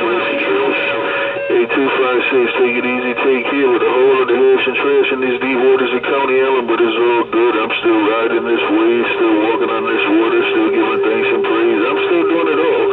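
Uniden Bearcat CB radio's speaker playing a strong incoming signal: thin, band-limited audio of wavering, warbling tones. A steady whistle cuts off about a second and a half in, and another steady whistle comes in near the end.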